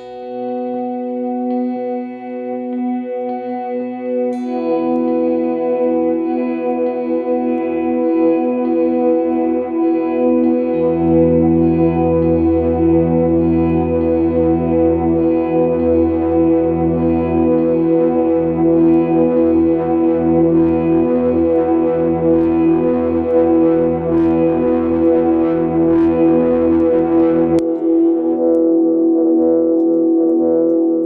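Baritone electric guitar played through stacked delay pedals, the Strymon El Capistan and EarthQuaker Devices Avalanche Run, with the repeats cranked to push them into self-oscillation. Sustained notes pile up into a dense, swelling wash that builds in loudness, with a pulsing low rumble coming in about a third of the way through. The textures blend together and get out of control.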